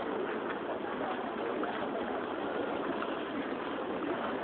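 Steady outdoor background hubbub with no distinct events standing out.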